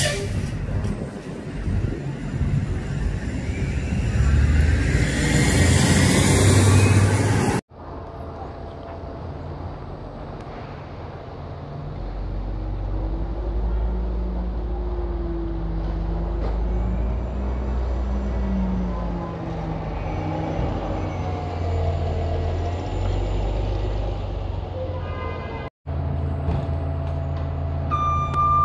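City bus and street traffic. A vehicle's noise builds to a loud rush, with a sharp hiss at the very start. Then an Orion VII hybrid-electric transit bus pulls in to the stop, its drive giving a low steady drone with a faint whine that rises and falls as it slows.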